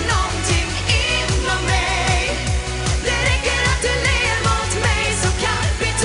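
Upbeat Swedish pop song performed live: singing over a steady driving beat with heavy bass.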